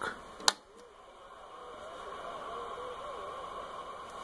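A single sharp click of a switch on a CB base radio, flipping its frequency-counter display over to the clock. It is followed by a faint hiss from the radio, with a thin whistle that wavers up and down in pitch for a few seconds.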